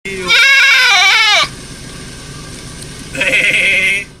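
Goat bleating loudly: one long, quavering bleat of about a second, dropping in pitch as it ends.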